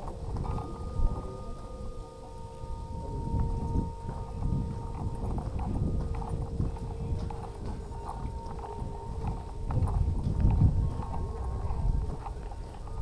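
Footsteps of someone walking on a gravel path, heard as irregular low thuds and rumble, with a faint steady hum of a couple of tones underneath in the first half.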